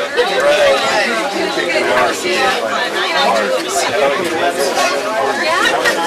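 Several people chatting at once, with overlapping conversation and no single clear voice.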